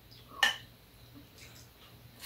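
Metal eating utensils clink once, sharply, against a dish about half a second in, with a short ring, followed by a few faint small taps.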